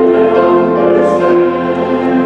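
A group of voices singing a hymn with piano accompaniment, in long held notes.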